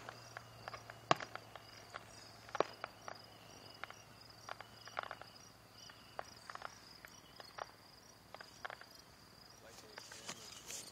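Crickets chirping steadily in a high, evenly pulsed trill, with scattered sharp clicks and pops throughout. The loudest pops come right at the start and about a second in.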